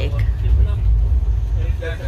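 Steady low rumble inside a passenger train coach, with passengers' voices over it and one voice becoming louder near the end.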